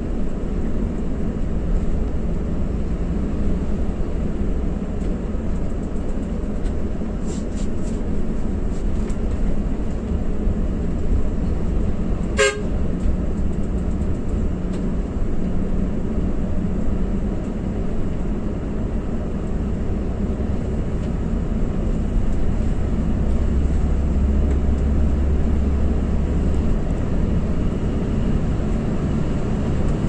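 Coach engine and road noise heard from inside the cab while driving, a steady low drone. A single sharp click comes near the middle, and the low drone grows stronger about two-thirds of the way through.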